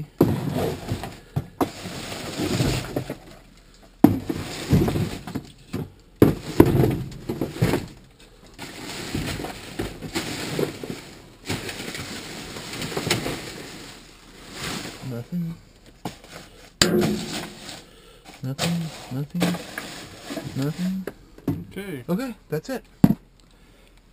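Trash being rummaged through in a dumpster: plastic bags rustle and cardboard boxes scrape as they are shifted with a reach pole, in uneven stretches broken by a few sharp knocks.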